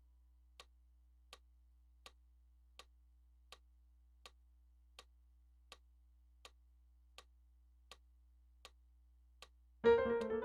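Metronome ticking steadily at about 80 beats a minute, one short click every three-quarters of a second, over a faint low hum. Electric piano notes come back in right at the end.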